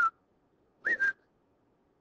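A man whistling briefly: a short note dies away at the start, then a quick two-part whistle about a second in rises and settles onto a steady lower note.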